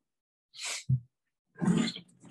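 Sliding blackboard panels being moved by hand along their track: a short rushing noise, a sharp low thump just before a second in, then a second, louder rush near the end.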